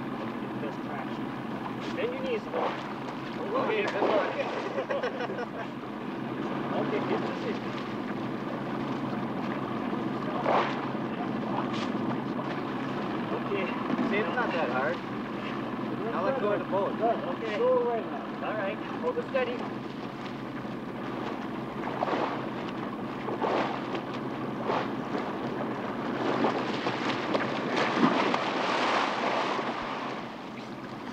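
Men's voices calling out over wind on the microphone and river water, with a few knocks, then a big splash and churning water near the end as a man falls off a floating log into the river.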